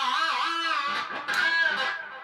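EVH Wolfgang electric guitar through an EVH Lunchbox amp: a sustained high note wavers up and down in pitch under the tremolo bar. A second note is picked about a second and a half in and bends down near the end.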